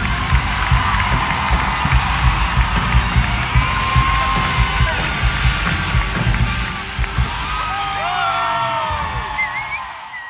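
Live arena concert music with a strong regular beat, heard from within the crowd; the music stops about seven seconds in, and the crowd cheers and whoops.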